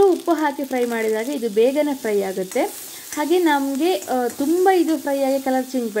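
Onion and capsicum pieces frying in oil in an iron wok, a steady sizzle, with a woman's voice talking over it almost throughout.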